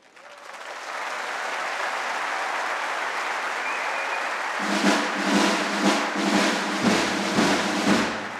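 Audience applause rising and holding steady. About halfway through, the brass band strikes up its next piece under the applause, with drum beats about twice a second over low brass tones.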